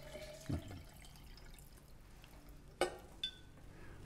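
Faint dripping and trickling of water as the pour from a glass jug into a stainless-steel water bottle tails off. Near the end come a sharp click and a brief ringing clink.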